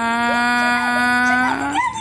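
A dog howling: one long, steady call that rises slightly near the end and breaks into short rising-and-falling yelps, the dog frightened by the firecrackers.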